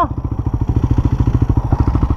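Enduro motorcycle engine running at low revs, a rapid, even, steady pulse.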